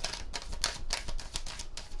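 A deck of tarot cards shuffled by hand, a rapid, irregular run of soft card clicks as the cards are passed from hand to hand.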